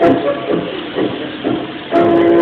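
Argentine tango music playing, with a steady beat of about two notes a second.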